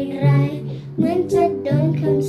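A young girl singing a song, accompanied by a strummed acoustic guitar.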